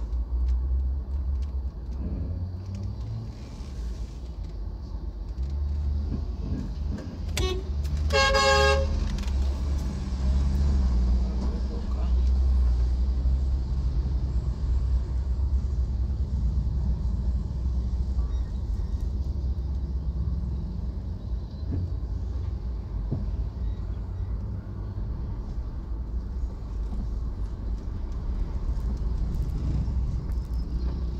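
Steady low rumble of a car's engine and road noise heard from inside the cabin in slow traffic, with a vehicle horn sounding one short blast of about a second around eight seconds in.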